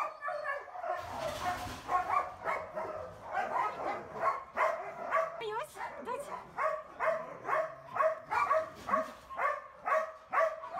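A dog barking over and over in a steady rhythm, about two barks a second.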